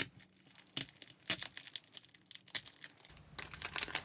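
Card box and plastic sleeve of a pack of Stalogy sticky notes being opened and handled: scattered crackles and crinkles of paper and plastic at irregular moments, the sharpest right at the start.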